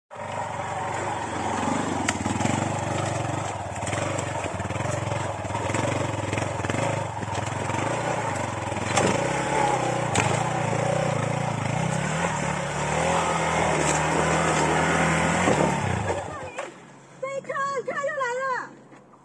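Yamaha XG250 Tricker trail bike's single-cylinder engine running and revving as it picks its way over rocks and roots, with a few sharp knocks. It holds a steadier, higher note for a few seconds, then cuts out about sixteen seconds in, and a voice calls out near the end.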